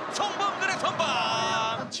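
A man's drawn-out excited exclamation from a football commentator, held for about a second near the end, reacting to a shot on goal that is saved or goes wide, after a few short shouted syllables.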